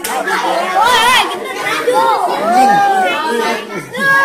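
A group of voices talking and calling out over one another, one of them a man speaking loudly with a strongly rising and falling pitch.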